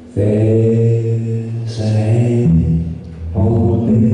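A low male voice singing long, held wordless notes, moving to a new pitch about every second.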